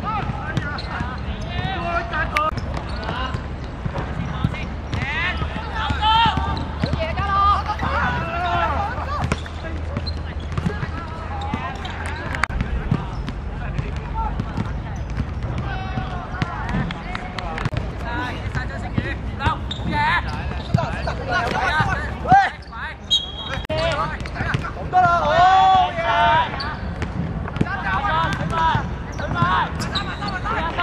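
Footballers shouting and calling to one another across the pitch, with scattered thuds of the ball being kicked on artificial turf.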